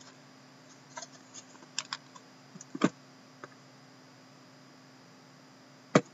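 Plastic shrink wrap on cardboard trading-card boxes being worked at and cut open: scattered short crinkles and clicks, with the loudest snap about three seconds in and a quiet spell after it.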